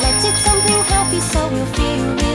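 Children's pop song with a sung English lyric over a steady drum beat. A high, steady ringing tone sits over the music and stops a little over halfway through.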